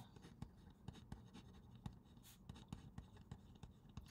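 Faint scratching of a pen writing on paper: a run of short, uneven strokes as a few handwritten words go down.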